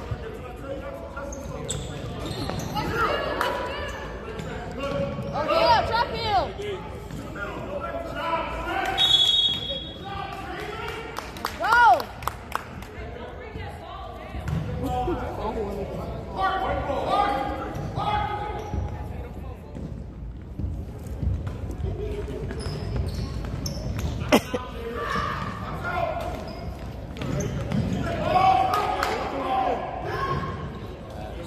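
Youth basketball game on a hardwood gym floor: the ball bouncing, sneakers squeaking, and crowd chatter echoing in a large hall. A short whistle blows about nine seconds in.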